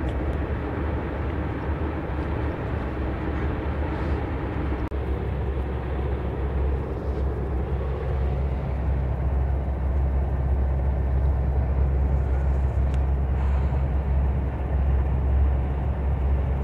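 Double-decker coach bus driving on a highway, its steady low rumble heard from inside the passenger cabin, growing a little louder about halfway through.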